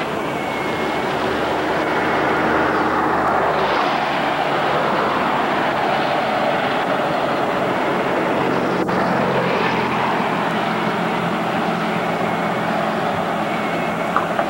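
Steady running noise of a moving vehicle, engine, tyres and wind together, heard from on board as it drives along a road. The noise changes character abruptly about four seconds in, and there is one short click near the middle.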